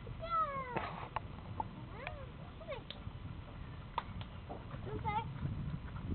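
Five-week-old puppies whining and yelping: several short, high cries that fall in pitch, one wavering cry about five seconds in, with a few sharp clicks between them.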